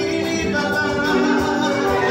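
Church choir singing a hymn with held notes that change pitch.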